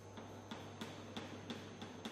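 Chalk on a blackboard drawing a diagram, knocking and scraping in short sharp strokes about three times a second.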